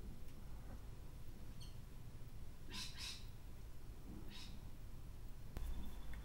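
Quiet room tone with a low steady hum, a few faint short high sounds in the middle, and a single sharp click near the end, like a computer mouse click.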